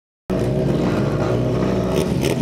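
Drag-race car engines idling steadily on the start line. The sound starts a moment in.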